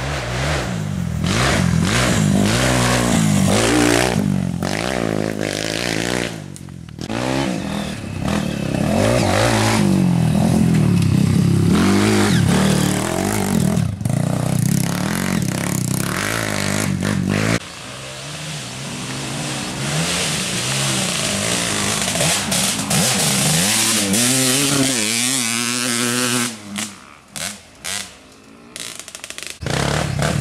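Enduro dirt bike engines revving hard, the pitch rising and falling as the throttle opens and closes through gear changes, one bike after another. The sound drops away a few times near the end.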